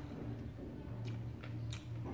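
A person chewing crispy batter-fried banana fritters with the mouth closed, with a few short crunches.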